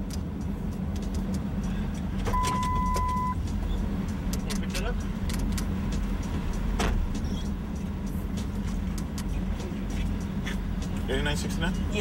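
Truck engine idling in a steady low rumble, heard from inside the cab. A single steady electronic beep lasting about a second comes about two seconds in.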